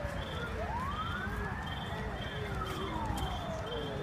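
Emergency vehicle siren wailing, one slow rise and fall in pitch over about three seconds, over steady low street rumble. A shorter high tone pulses about twice a second throughout.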